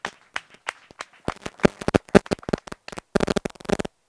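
A small group of people clapping by hand in irregular, uneven claps, sparse at first and growing denser about a second in.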